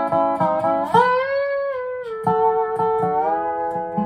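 A dobro (resonator guitar) played lap style with a steel bar: a few quick picked notes, then about a second in a note slid up and held before easing back down, followed by more picked notes.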